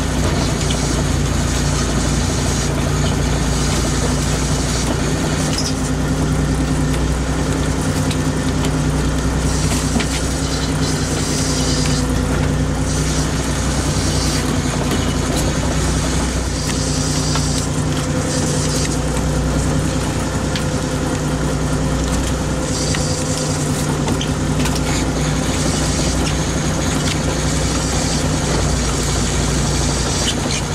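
Steady drone of a small fishing boat's engine and hydraulic net hauler running while a gill net is hauled aboard, with a higher hiss coming and going.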